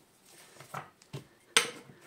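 Small handling sounds at a workbench: a couple of soft rustles and taps from a cloth wad being handled, then a sharp click about one and a half seconds in, the loudest sound.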